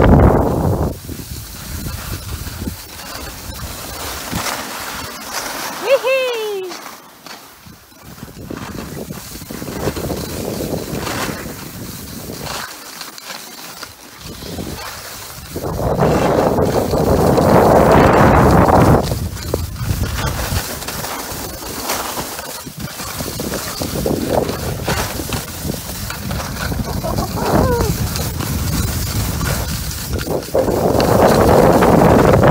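Skis scraping and hissing over packed snow, with wind buffeting the microphone, during a downhill ski run. A short falling vocal cry comes about six seconds in, and the scraping surges loudest for about three seconds just past halfway.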